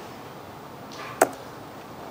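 Quiet room tone, broken once about a second in by a single short, sharp click.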